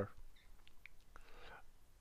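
Quiet pause with a few faint clicks from a computer mouse and a soft breath about three-quarters of the way through.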